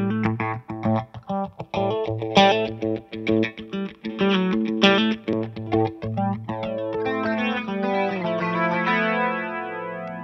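Electric guitar playing overdriven chords through a flanger placed after the drive, over a steady low bass note. From about seven seconds in, a last chord rings out with the flanger's slow sweep moving through it.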